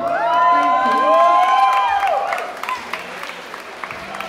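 A woman's sung, drawn-out final note ends about two seconds in. Audience applause follows and continues at a lower level.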